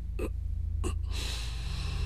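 A man gasping in distress: two short, sharp intakes of breath, then a longer breath, over a low, steady drone of dramatic underscore.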